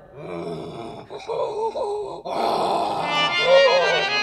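Wordless vocal sounds from the folk singer over quiet accompaniment, with a harmonium coming in near the end.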